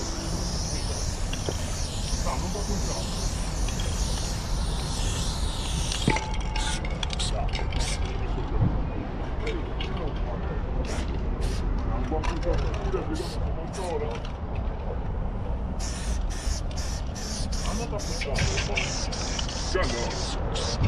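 Aerosol spray-paint can spraying: one long hiss for about the first six seconds, then a run of short bursts as the fill is worked in, with the bursts coming thick again near the end.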